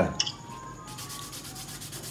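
Light, steady scratchy rubbing against a painted canvas, a dry material drawn over the surface by hand.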